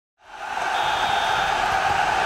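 Intro sound effect: a steady rushing noise that fades in over the first half-second and then holds.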